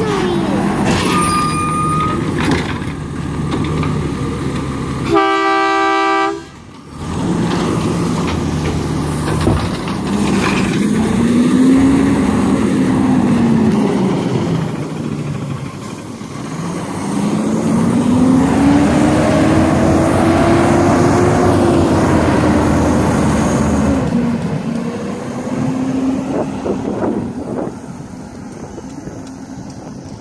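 Diesel engine of an automated side-loader garbage truck running, with a single horn honk about five seconds in. The engine then revs up and back down twice as the truck pulls away, fading near the end.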